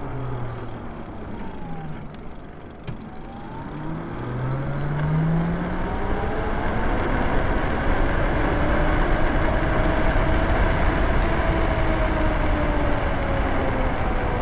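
Lyric Graffiti e-bike's electric motor whining as the bike slows through a turn and then accelerates. Its pitch falls for the first few seconds, then rises steadily and levels off near the end, with wind and tyre noise building as speed picks up.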